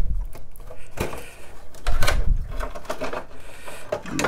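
An ISA drive-controller card being worked out of its slot in a metal PC case, its ribbon cables dragging: scraping and rustling, with a sharp click about a second in and a louder scrape about two seconds in.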